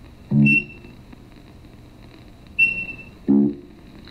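Short electronic beeps and brief pitched tones from a cartoon animation's soundtrack, played over room speakers. A high beep sounds about half a second in and again past two and a half seconds, each with a short low note near it.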